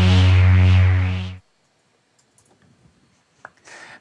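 Shaper iOS software synth holding a low sustained note whose tone swells and dips in a steady rhythm, a bit under twice a second, driven by its LFO. The note stops abruptly about a second and a half in, followed by a few faint clicks.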